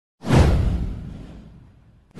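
An intro whoosh sound effect: a sudden swoosh with a deep low rumble under it, starting about a quarter second in and fading away over about a second and a half.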